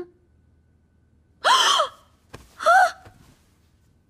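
A young woman gasping in shock twice, each a short breathy voiced 'ah', the first about a second and a half in and the second about a second later.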